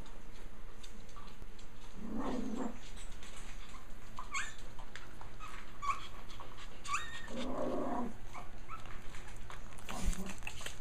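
Japanese Chin dogs vocalising: two short low growl-like sounds, about two seconds in and again about seven and a half seconds in, with several brief high squeaks between them.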